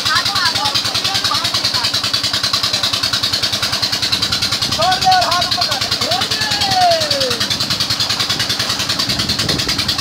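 A tube-well pump's engine running with a rapid, even beat, over the constant rush of water gushing from the outlet pipe. Children's voices shout and call, most clearly around the middle.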